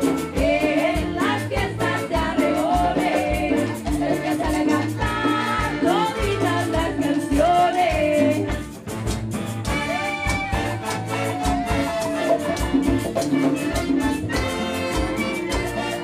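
Live cumbia band playing over a steady beat: accordion, clarinet, congas and drum kit, with a lead line that slides between notes.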